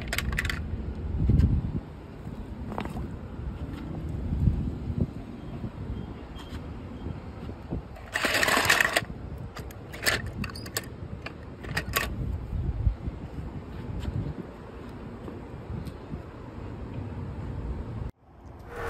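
Die-cast toy cars clinking and clattering against each other and a plastic bowl as a hand sifts through them, with a burst of clatter about eight seconds in and a few sharp clicks after, over a low rumble.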